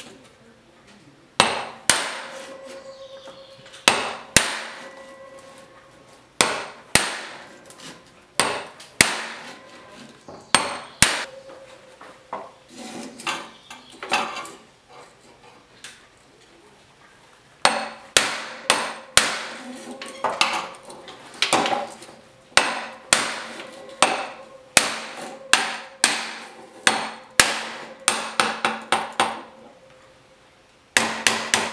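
Ball-peen hammer striking a square steel bar to tap a groove into sheet steel clamped in a bead-forming jig, each blow ringing briefly. The blows come every second or two at first, pause briefly past the middle, then quicken to about two a second.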